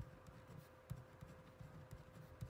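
Pen writing by hand on a yellow legal pad: faint, irregular scratching strokes of the tip on the paper.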